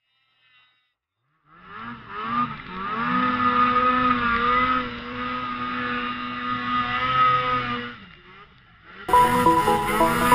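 Two-stroke Ski-Doo E-TEC snowmobile engine revving up and holding high revs while the sled climbs through deep powder. It comes in after a near-silent second and a half and rises in pitch before steadying. It fades near the end, then comes back loud about nine seconds in and cuts off suddenly.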